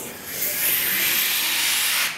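A long hissing inhale of helium drawn from a latex party balloon through its neck, the balloon deflating as the gas rushes out. The hiss starts about half a second in and stops sharply at the end.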